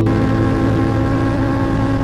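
Sport motorcycle engine running at a steady high speed, a constant drone with no change in pitch.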